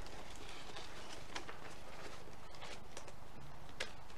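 Cardboard gift boxes and mesh ribbon being handled, with a few scattered light taps and rustles over a steady low room hum.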